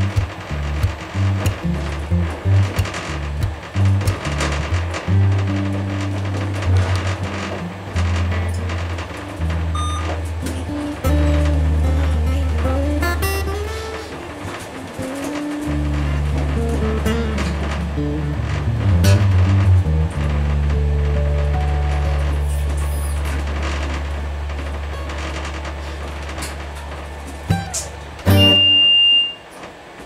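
Background music with held low bass notes changing every second or two and a melody above them. Near the end the music stops and a loud, steady high tone sounds for about a second.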